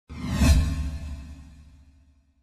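A whoosh sound effect with a deep low rumble, swelling to a peak about half a second in and then fading away.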